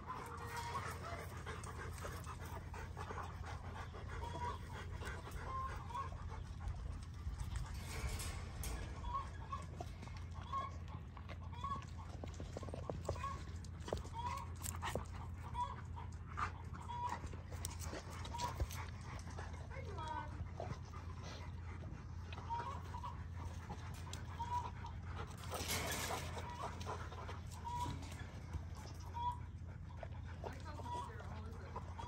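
Rottweiler whining in short, high notes about once a second, over a steady low hum.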